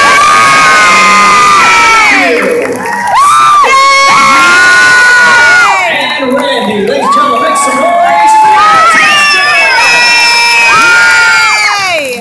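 A large audience cheering and shrieking loudly, with many voices holding high-pitched yells. The noise comes in waves, dipping briefly about two and a half seconds in and again around six to seven seconds, then swelling back up each time.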